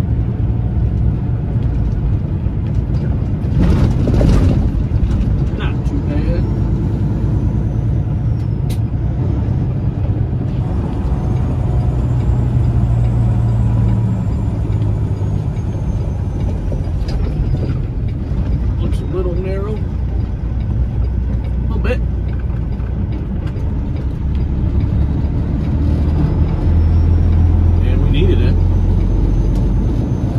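Semi-truck diesel engine drone heard from inside the cab while driving, with the low engine note changing a couple of times along the way. A short rush of noise comes about four seconds in.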